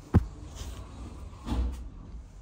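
A door being worked as the shop is opened: a sharp knock just after the start, then a longer, heavier thud about a second and a half in.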